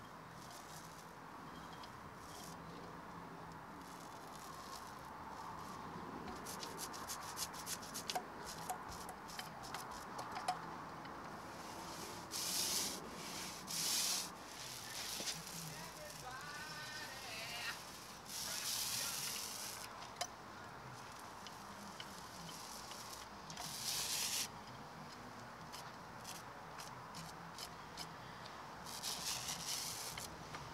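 Paint roller working bitumen blacking onto a narrowboat's steel hull: a series of short rubbing strokes, each about a second long, with a scatter of faint clicks between them.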